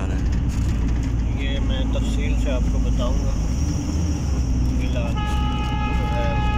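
Engine and road noise of a moving passenger vehicle, heard from inside the cabin as a steady low rumble, with faint voices. About five seconds in, a steady pitched tone starts and holds.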